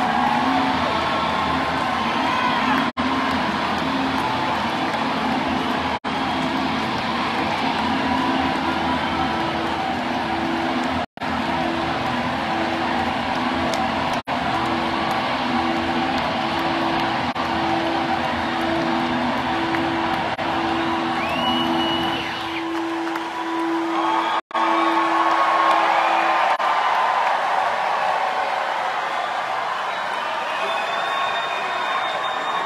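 Concert crowd cheering and whooping over a live rock band's closing sound. A held low note pulses evenly and stops near the end, while the band's lower notes drop out a little before it. The recording cuts out for an instant several times.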